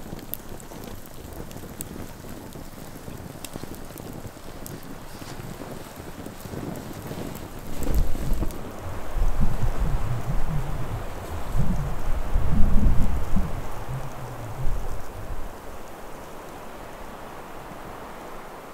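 A steady outdoor hiss with a few faint crackles from a wood campfire, then irregular gusts of wind buffeting the microphone as low rumbles through the middle of the stretch.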